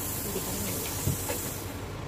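Steady hiss of rushing air; its high part cuts off suddenly near the end. A soft knock comes about a second in.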